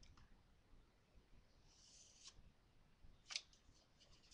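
Faint rustle of a printed paper sheet being handled and shifted in the hand, with one short sharp click a little over three seconds in.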